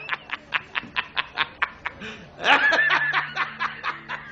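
A man laughing hard in rapid, even bursts of about five a second, breaking into a louder, higher-pitched laugh just past halfway through.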